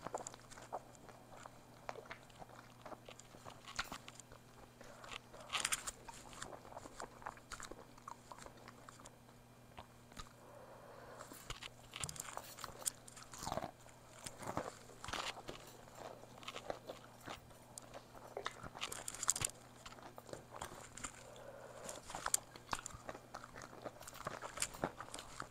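Close-miked chewing of a crispy fried egg roll: the wrapper crunching and crackling between the teeth in irregular bites, with wet mouth sounds.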